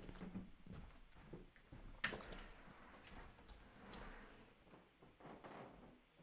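Near silence in a small room, broken by faint scattered knocks and rustles and one sharper click about two seconds in.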